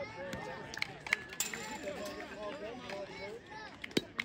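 Spectators' voices chattering at a youth baseball game, then near the end one sharp crack of a metal youth bat hitting the ball.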